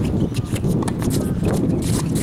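Tennis ball strikes and players' shuffling footsteps on a hard court during a doubles rally: a run of sharp knocks over a steady low rumble.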